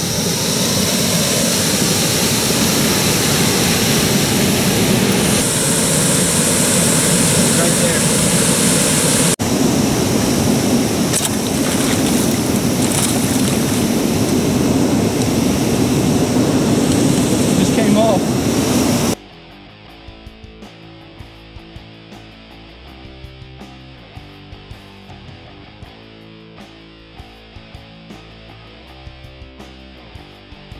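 Loud steady noise for about the first nineteen seconds, with a short break about nine seconds in. It then cuts off abruptly to quieter background guitar music with a steady beat.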